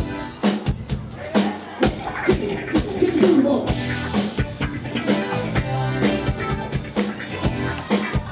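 Live band playing an upbeat dance number: a steady drum-kit beat with bass guitar and keytar, and a singer's voice over it, sliding in pitch about two to three seconds in.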